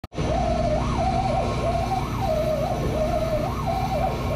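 CO2 laser engraver running an engraving job: the gantry's stepper motors whine steadily, the pitch gliding up and back down about once a second as the laser head moves back and forth, over a steady low hum.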